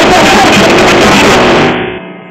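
Live punk rock band playing loud, distorted electric guitars, bass and drums. Near the end the playing falls away and the sound drops off sharply.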